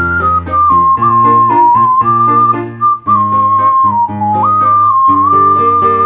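Ocarina playing a slow melody in clear, nearly pure, flute-like notes that step up and down, with a dip and a leap back up about four and a half seconds in. Underneath runs an accompaniment of sustained bass notes and chords.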